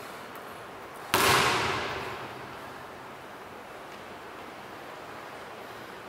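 One sudden loud bang about a second in, echoing and dying away over about a second, over a steady background hiss.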